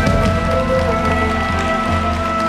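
Live band with a brass and saxophone section (trombone, trumpet, saxophones) over bass and drums, holding a long sustained chord as the song closes.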